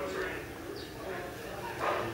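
Indistinct talking, with one short, louder voiced sound near the end.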